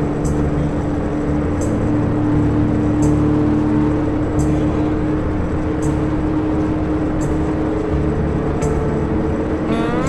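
Motorcycle running at highway speed with steady engine and wind noise. Music is mixed in, with a short high stroke about every second and a half.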